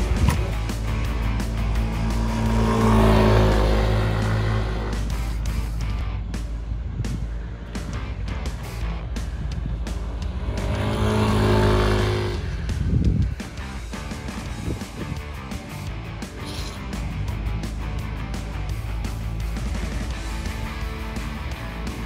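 Yamaha Aerox scooter engine passing by on a race circuit twice, louder and swelling in pitch about three seconds in and again around eleven seconds, over background music.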